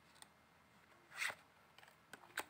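Tarot cards being handled: one short sliding swish of card against card a little over a second in, with a few faint clicks around it.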